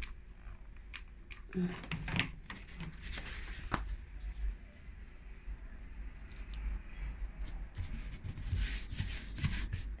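Hands pressing and smoothing a sheet of card onto hot glue on a tabletop: light rustling of the paper with scattered small clicks and taps.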